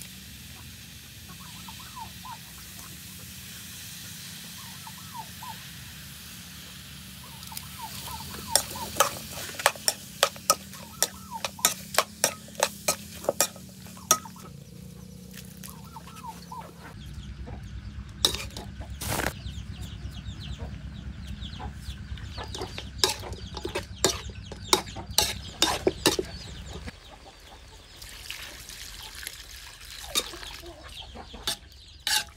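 Metal spoon clanking and scraping against an aluminium wok in two runs of quick, sharp knocks as chicken pieces are stirred, with hens clucking in the background.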